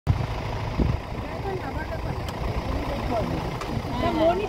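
Safari vehicle's engine running, a steady low rumble, with a bump just under a second in. People talk indistinctly in the background.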